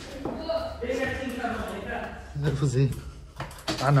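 People talking: voices run through the whole stretch, with a louder, lower voice about two and a half seconds in and again at the very end.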